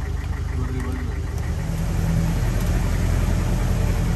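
Engine of an old 4x4 jeep running as it drives uphill, heard from inside the open rear of the vehicle, growing slowly louder.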